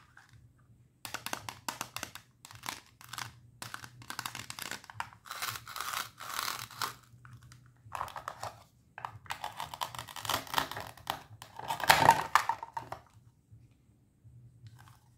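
Velcro ripping in a series of scratchy bursts as the two halves of a plastic play-food vegetable are worked and cut apart with a plastic toy knife. The loudest rip comes near the end, as the halves come free.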